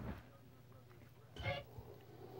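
A low steady hum, with one brief throaty vocal sound from a man about one and a half seconds in.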